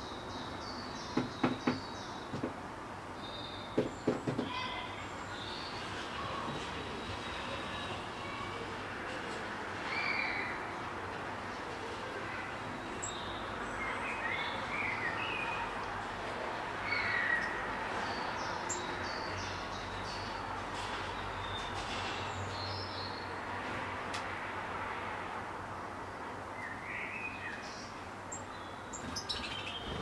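Small birds chirping in short, scattered calls over a steady low background rumble, with two brief clusters of sharp knocks in the first few seconds.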